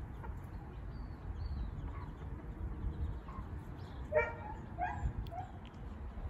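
Young chickens calling outdoors: faint high, falling peeps in the first half. Near the end come three short, louder, lower calls, the first about four seconds in being the loudest.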